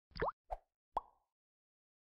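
Three short, faint plop-like sound effects, two of them sliding quickly upward in pitch, the last one about a second in.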